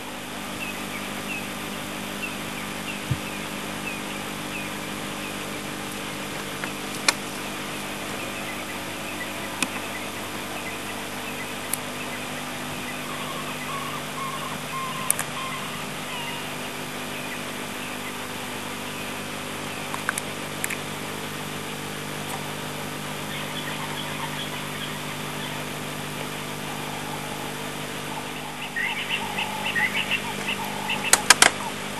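Outdoor bush ambience: a steady low hum with a run of short, repeated bird chirps in the first several seconds and a few more bird calls later, and a few faint clicks.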